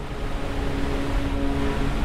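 Steady rushing noise of glacier ice calving and falling into the water, with a few held music notes faintly underneath.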